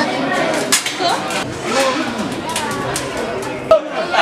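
Voices talking in a room, with several sharp clicks and knocks and a louder knock near the end.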